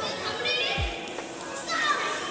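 Children's voices in a large echoing hall, with short high-pitched calls about half a second in and again near the end, and a dull low thump just before one second.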